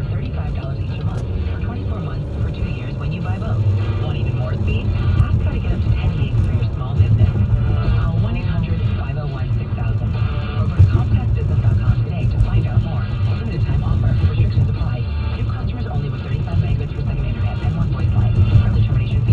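Car radio tuned to an AM news station, playing music with a voice through the car's speakers during a commercial break, over the steady low road and engine rumble of the car in motion.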